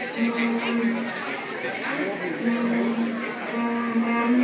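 Audience chatter in a hall, with an electric guitar on stage sounding three long held notes.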